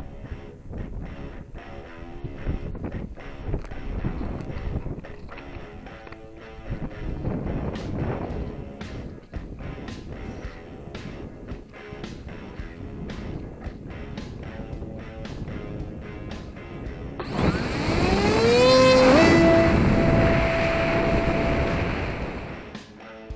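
Background music with a steady beat. About 17 s in, the twin brushless motors with 6-inch props spool up sharply in a rising whine for the hand launch, then hold a steady high whine at launch throttle.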